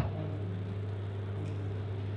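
A steady low hum with faint even background hiss, between spoken phrases.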